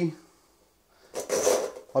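One stroke of a butcher's bow saw through the breast ribs of a roe deer carcass. The stroke starts about a second in and lasts a little under a second.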